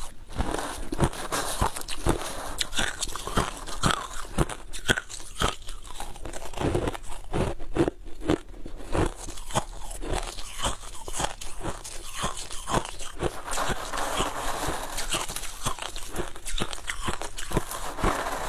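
Crushed ice being bitten and chewed right at a clip-on microphone: a quick, irregular run of sharp cracks and crunches.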